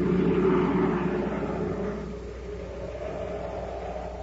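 Radio-drama rocket-ship sound effect: a rumbling rush that swells in and then slowly dies away.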